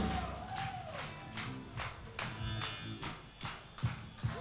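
Quiet live rock-band music between songs: soft sustained low notes with a steady tick about two and a half times a second.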